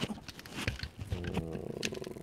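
Handling noise as the camera is picked up and carried against a shirt: rustling and knocks on the microphone. From about a second in, a low pitched sound wavers in pitch for most of a second.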